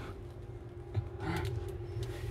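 Quiet room tone: a low steady hum with faint movement noise and no distinct event.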